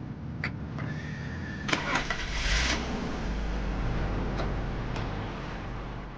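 A car engine starting, with a short noisy burst a little after two seconds and a few light clicks before it, then running steadily with a low rumble as the car moves off.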